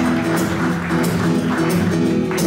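Acoustic guitar strummed steadily, its chords ringing between sung lines.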